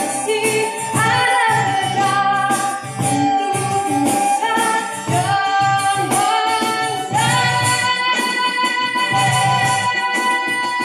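A woman sings a musikalised poem with a small live band: violin and acoustic guitar over a steady beat. Her long, wavering notes carry the melody.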